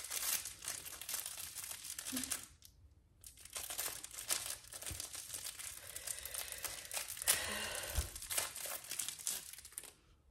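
Plastic packaging being crinkled and pulled open by hand, in two spells of crackling with a short pause about two and a half seconds in.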